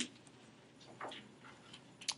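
A few faint, short clicks or taps at uneven intervals in a quiet room.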